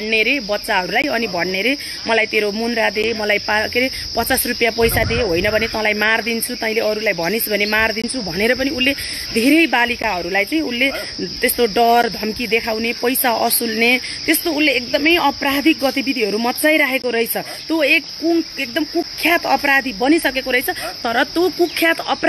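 A woman talking continuously, with a steady high chirring of insects underneath.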